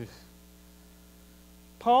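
Steady electrical mains hum, a low buzz made of several steady tones, heard through a pause in speech.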